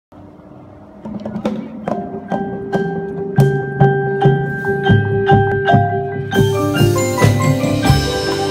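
Drum corps front ensemble playing: marimbas and vibraphones struck with mallets in a steady pulse of about two strokes a second, the notes ringing on. The music starts about a second in and fills out with more instruments and a bright shimmer about six seconds in.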